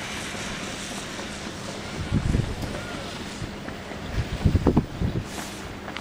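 Wind buffeting an outdoor microphone over a steady hiss, with low rumbling gusts about two seconds in and again for about a second from four seconds in.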